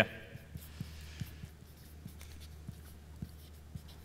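White marker writing a word on a blackboard: faint, irregular little taps and strokes as the letters are drawn, over a steady low room hum.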